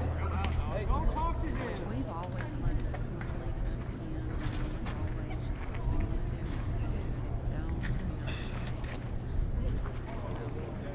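Indistinct chatter of nearby spectators, several voices talking at once at a ballpark, over a steady low hum, with a brief hiss about eight seconds in.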